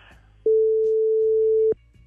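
A single steady electronic beep, one mid-pitched tone about a second and a quarter long, that switches on and off abruptly, typical of a radio censor bleep.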